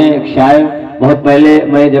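A man's voice reciting in a drawn-out, chanted style, holding long level notes, over a steady low hum.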